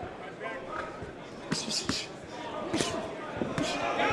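Boxing gloves landing punches during a close exchange: several sharp smacks over the second half, over a murmur of arena crowd and voices.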